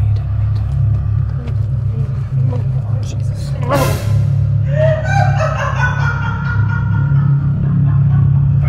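Dramatic trailer score with a steady low drone. A sudden sweeping whoosh comes about four seconds in, followed by a held higher tone.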